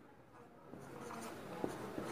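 Marker pen writing on a whiteboard: faint scratching strokes that begin under a second in, with a light tap of the pen past the middle.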